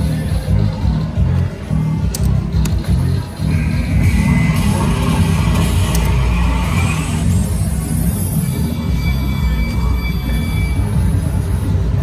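Loud casino music with a heavy pulsing bass beat, mixed with a slot machine's electronic reel-spin and win sounds: a rising electronic jingle from about four to seven seconds in as a small win pays, then steady held tones near the end.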